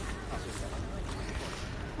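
Outdoor street ambience: a steady low rumble and hiss, with faint distant voices.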